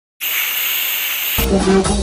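A short silence and a burst of high, hissing noise, then a rock band playing live with a male voice singing, starting about one and a half seconds in.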